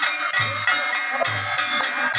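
Santali Dansai dance music played live: hand drums beat a steady repeating rhythm under bright metallic clanking and jingling percussion.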